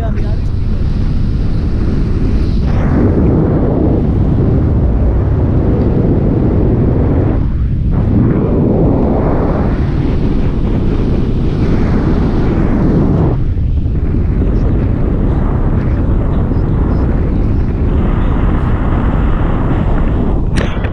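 Wind from the flight's airspeed buffeting an action camera's microphone, a loud, steady rumble that eases briefly a couple of times.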